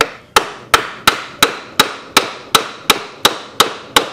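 A hammer pounding a wooden block set against a seized piston in an antique Briggs & Stratton 5S engine cylinder, about a dozen hard, even blows at roughly three a second, each with a short ring. The piston is not yet budging.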